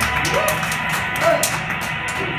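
Live electric guitar playing through a band's amplifiers, with a steady hum underneath and voices in the room.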